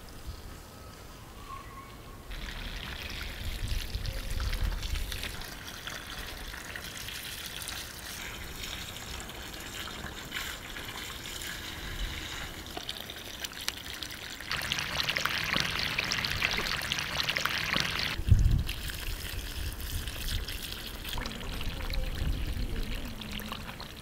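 Water running from a garden hose onto soil and plants as a bed is watered. The flow starts about two seconds in, grows louder later on, and stops suddenly with a low thump before trickling on more softly.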